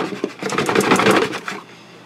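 Cardboard box being handled and shifted: a rapid run of crackling, scraping clicks that dies away about one and a half seconds in.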